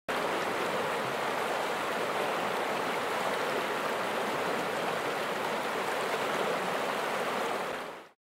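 Fast river water rushing steadily through whitewater. It cuts off suddenly near the end.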